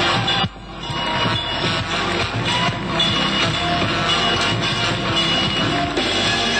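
Electronic dance music with a steady beat, dropping out briefly about half a second in before coming straight back.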